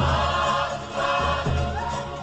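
Cook Islands group singing, several voices together with sliding pitches, over repeated low drum strokes.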